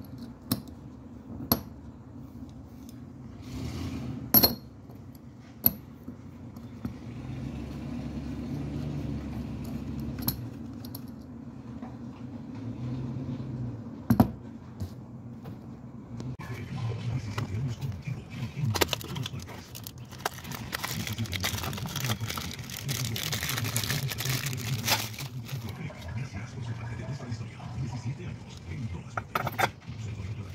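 Loose steel wheel-bearing parts (ball cages, races and bearing shells) knocked together and set down on a rubber mat, giving a few sharp metallic clinks, the loudest about halfway through. Rougher handling noise follows in the second half, over a steady low hum.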